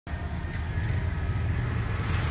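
Steady low rumble of road traffic, with no distinct events.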